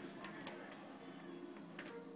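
Small neodymium magnet spheres clicking against one another as a sheet of them is bent and folded by hand: a few scattered sharp clicks, with two close together near the end.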